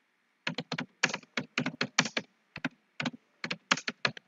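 Computer keyboard typing: a quick, uneven run of keystrokes, about six a second, starting about half a second in.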